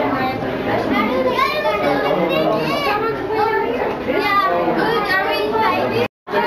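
Several children talking and calling out at once, their high voices overlapping and rising and falling in pitch.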